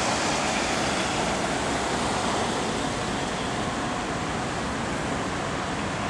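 Steady city street traffic noise from cars driving along a busy road.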